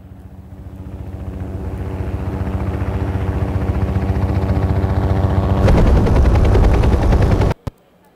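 Opening of a film trailer's soundtrack played over loudspeakers: a fast, rhythmic low thudding with a steady hum. It swells for about five seconds, turns louder and harsher, then cuts off abruptly.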